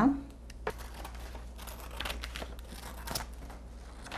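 A sheet of paper-like iron-on fusible (termocolante) rustling and crinkling as it is handled and cut with scissors, with a few sharp crackles scattered through.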